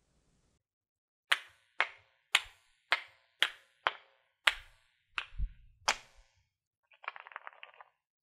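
A run of about ten sharp clacks, roughly two a second, each with a short ringing tail, followed near the end by a brief buzzing rattle.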